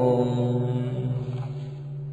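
The end of a Vietnamese Buddhist repentance chant line: the last sung syllable dies away in the first half second, leaving a steady low musical drone that slowly fades.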